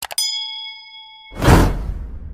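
Subscribe-button animation sound effects: a quick double mouse click, then a notification-bell ding that rings for about a second, then a loud swelling rush of noise with a deep low end, loudest about a second and a half in and dying away.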